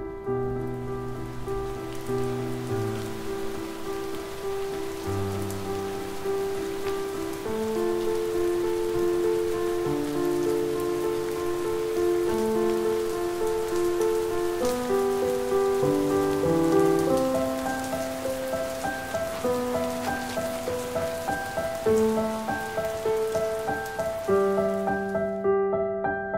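Steady rain falling, with the film's slow instrumental score over it: held notes changing every second or two, moving higher in pitch in the second half.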